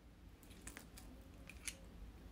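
Faint close-miked mouth sounds of someone chewing a mouthful of food: a few soft, crisp clicks, the sharpest near the end.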